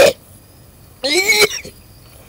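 A boy giving one short, voiced cough about a second in.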